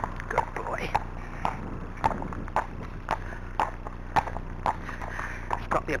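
A Friesian horse's hooves striking a tarmac lane at a walk, about two even hoofbeats a second.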